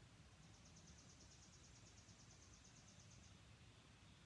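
Near silence, with a faint, high, evenly pulsed animal trill of about nine pulses a second that starts about half a second in and stops after roughly three seconds.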